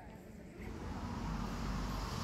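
Outdoor background noise: a steady low rumble with hiss that comes up about half a second in.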